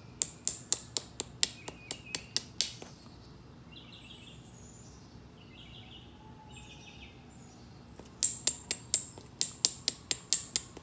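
Rapid sharp clicks of a copper-tipped knapping tool striking the edge of a stone nodule: a run of about ten strikes, a pause of several seconds, then another run near the end. Faint bird chirps can be heard in the pause.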